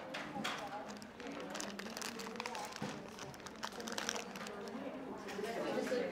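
Indistinct chatter of several people in a large room, with scattered clicks and rustles of paper and craft tools being handled.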